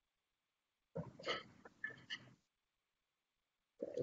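Mostly near silence, broken about a second in by roughly a second and a half of short knocks and a brief vocal sound.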